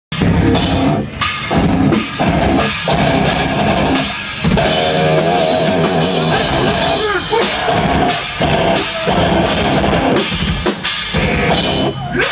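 Loud live heavy rock band: drum kit pounding under bass guitar and electric guitars, with brief stops in the rhythm.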